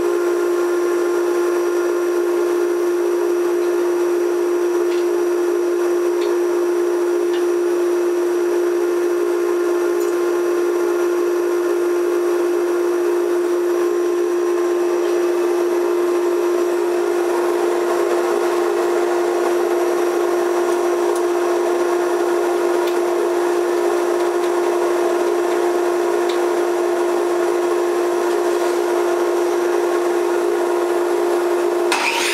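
A steady machine hum with one strong, constant whining tone, running unchanged throughout.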